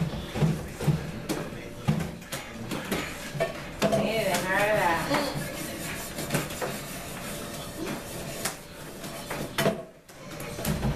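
Playing cards being passed hand to hand and tapped on a wooden tabletop in a fast card game, an irregular run of sharp clicks and taps, with voices over them, loudest about four to five seconds in.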